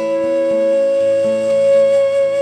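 Bansuri (bamboo transverse flute) holding one long steady note, over an acoustic guitar picking lower notes that change underneath it.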